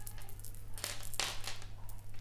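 A few soft, separate clicks and rustles of gemstone bead strands being handled and set down, over a steady low hum.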